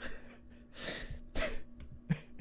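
A man laughing breathily under his breath, in three or four airy puffs with almost no voice in them.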